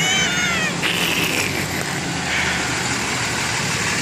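A vehicle engine running steadily, with a short high squeal that falls in pitch at the very start, followed by passing hissy noise.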